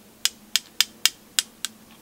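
A paint-loaded round paintbrush tapped again and again against another brush's handle to flick white splatter stars onto the paper: about seven sharp, light clicks, roughly three a second and unevenly spaced.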